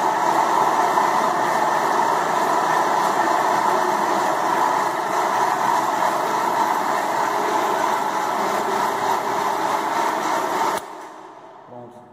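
Industrial rotary floor polisher running steadily on a white pad, spreading carnauba paste wax across a burnt-cement floor. The motor and pad noise is loud and even, then cuts off suddenly about a second before the end.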